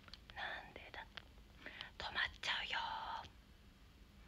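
A young woman whispering close to the microphone, in short breathy phrases, with a few light clicks in between.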